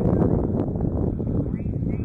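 Wind rumbling steadily on the microphone in an open field.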